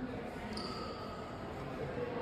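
Background noise of a large indoor exhibition hall: faint voices of other visitors and a few light thumps on a hard floor.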